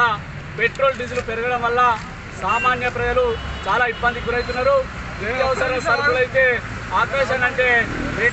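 A man speaking in Telugu without pause, over a low rumble of street traffic.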